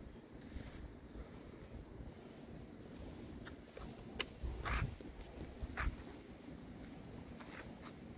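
Faint handling and rustling noise over a low rumble, with a sharp click a little after four seconds in and two brief scuffs, like a handheld camera being carried by someone walking.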